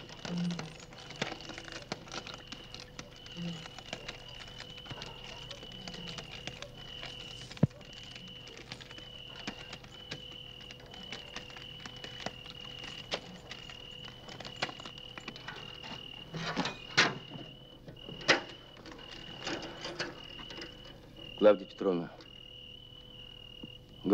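Crickets chirping in a steady, slightly pulsing high trill, with a few sharp clicks in the second half.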